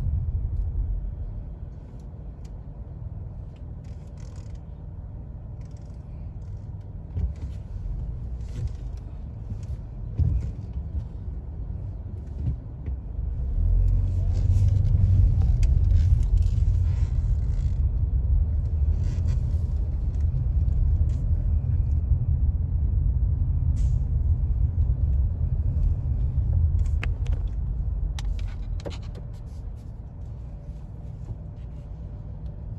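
A car driving, heard from inside the cabin: a steady low rumble of engine and road noise. It swells about halfway through and eases off again near the end.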